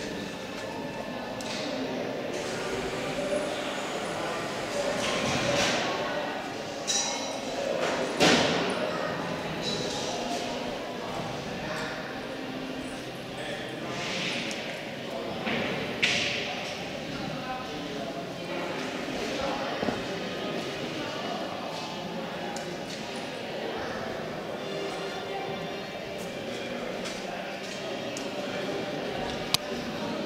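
Indistinct background voices in a large echoing hall, with a few sharp knocks, the loudest about eight seconds in.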